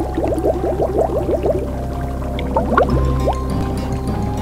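Cartoon music with held notes over a low hum, overlaid with quick rising bubbling bloops from a cauldron: a rapid run of about ten in the first second and a half, then a few more about three seconds in.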